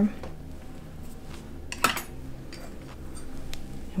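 Light metallic clicks and clinks from hands working among the latch needles of a circular sock machine's cylinder. There is one sharp click a little before halfway, over a low steady hum.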